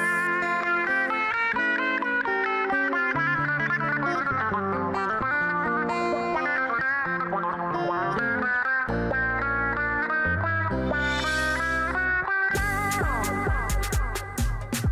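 Background music led by guitar, with a bass line joining partway through and a drum beat starting near the end.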